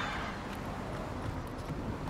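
Steady low rumble of street traffic and a car running, with a few faint knocks.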